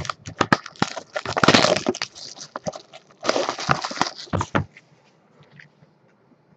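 Plastic shrink wrap crinkling and tearing as it is stripped off a sealed trading-card box, in two dense stretches of crackling with sharp clicks between, stopping a little over a second before the end.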